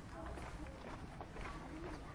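Footsteps on a paved street at a steady walking pace, with faint, indistinct voices in the background.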